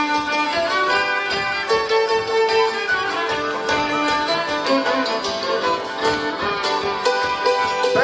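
Ukrainian folk dance tune played live, with fiddles leading over tsymbaly (hammered dulcimer), drum and bass.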